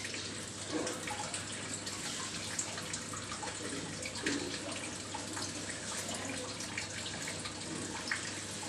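A steady hiss of kitchen background noise with a few faint soft knocks and clicks.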